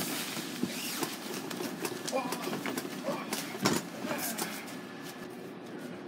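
Scattered knocks and thuds from people wrestling on a mattress, with faint voices in the background.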